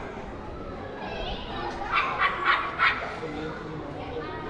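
A dog barking four times in quick succession about two seconds in, over the murmur of people talking.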